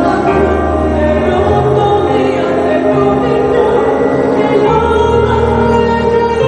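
Choral singing over a sustained low accompaniment whose bass notes change every second or two.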